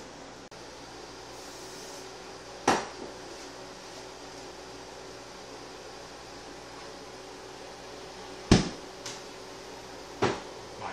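A very simple homemade potato gun loaded with newspaper fired with a short sharp pop near the end, a weak shot that carries the wad only about four feet. A smaller sharp knock comes about three seconds in, over a faint steady hum.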